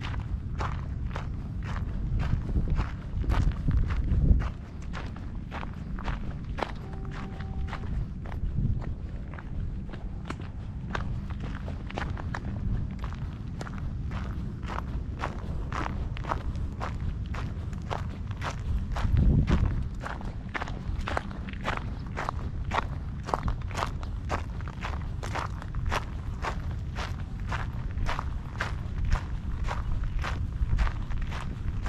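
Footsteps crunching on a gravel trail at a steady walking pace, about two steps a second, over a low wind rumble on the microphone that swells twice, a few seconds in and about two-thirds of the way through.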